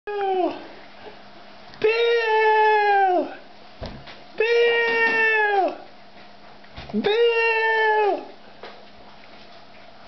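A person's voice making a run of long, high, drawn-out calls, each held on one pitch and dropping off at the end, about every two and a half seconds.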